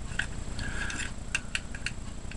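Small metal clicks and a brief scrape as the little serrated knife of a credit-card-sized survival tool is handled and fitted back into the card.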